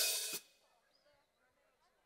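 A cymbal crash under the end of a man's chanted announcement, both cutting off abruptly about half a second in, followed by near silence.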